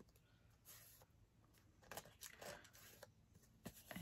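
Near silence, with a few faint rustles of paper being pressed and handled on a glued board.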